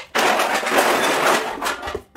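Crushed aluminium drink cans and plastic bottles clattering and scraping against each other as a hand rakes through the pile on a concrete floor: a dense, continuous rattle that starts just after the beginning and stops shortly before the end.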